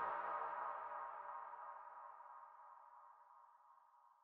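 End of a techno track fading out: a sustained synthesizer tone dies away steadily, its bass gone about two seconds in, leaving a thin ring around the middle.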